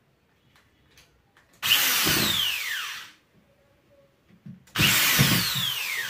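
Handheld electric drill run in two bursts of about a second and a half, starting about a second and a half in and again near the end. Its motor whine falls in pitch through each burst, and the first winds down as it stops.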